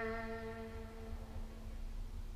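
Amplified electric guitar, a semi-hollow body played through an amp: the last struck note rings out and fades away over about a second, leaving a faint low hum.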